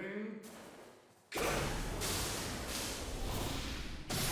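Anime episode soundtrack: a voice finishes a short line, then after a brief gap a loud, steady rushing noise starts suddenly and keeps on.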